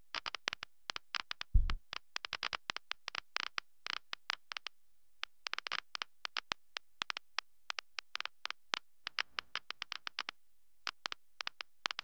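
Rapid, irregular clicks, several a second, from the reactor simulation's sound effects as it runs. There are brief pauses around the middle and near the end, and a single low thump about one and a half seconds in.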